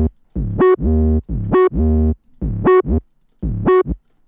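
808 bass line playing in a trap beat: short choppy notes with gaps, many sliding down in pitch as they hit, with a bright keyboard-like tone over them. One harsh 808 note has an extra narrow EQ cut so it sounds less harsh.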